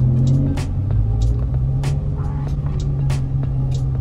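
Dodge Challenger 392 Scat Pack's 6.4-litre HEMI V8 heard from inside the cabin while creeping along at low speed: a steady low drone. Music plays over it.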